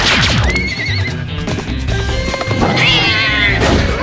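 Cartoon fight soundtrack: action music runs throughout. A warbling energy-blaster zap comes about half a second in, and a horse-like whinny sound effect follows near three seconds.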